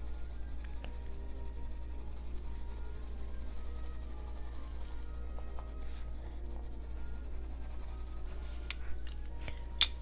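Quiet classical background music with the faint scratch of a coloured pencil rubbing on paper as a colour is blended in. A single sharp click sounds near the end.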